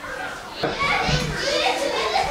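Several children's voices overlapping, as of children playing and chattering.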